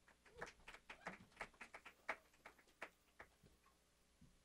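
Faint, scattered clapping from a few audience members: quick, irregular claps, several a second, that die away after about three seconds.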